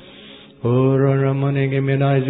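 A man's voice chanting long, steady held notes in tongues. There is a short breath gap at the start, then a new held note begins about half a second in.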